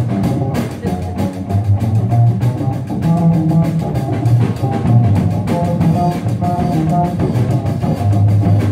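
Upright bass solo in a rock-and-roll tune: low plucked bass notes moving every half second or so over a steady drum-kit beat.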